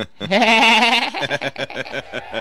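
Gloating laughter: a drawn-out, quavering laugh that breaks into a quick run of short chuckles.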